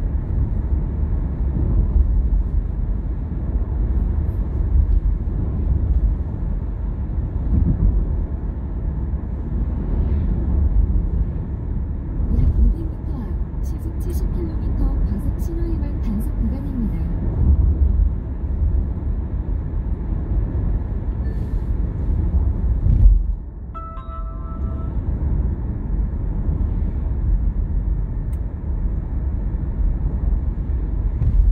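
Steady low road rumble of a car driving, heard from inside the vehicle. About 24 seconds in the rumble briefly drops and a short electronic chime of a few steady tones sounds for about a second.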